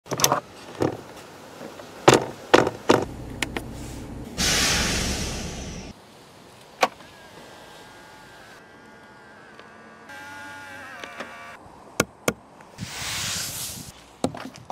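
Sharp clicks and knocks as the folding rear access ladder on a Land Rover Defender 110 is handled, then a loud rushing whirr of about a second and a half. Later come faint shifting tones, two sharp clicks and a second, shorter whirr near the end.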